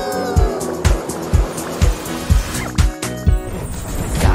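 Upbeat instrumental background music with a steady kick-drum beat about twice a second under held tones, and a falling sliding tone in the first second.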